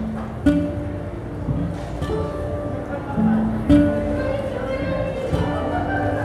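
Live Nordic folk music: a nyckelharpa and guitar play a slow passage of held notes, each lasting about a second, with plucked notes sounding at each change.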